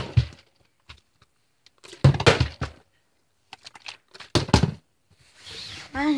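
A plastic water bottle being flipped and landing with heavy knocks, three times about two seconds apart. Each landing is a quick cluster of hits as the bottle strikes and bounces: missed flips that don't stay up.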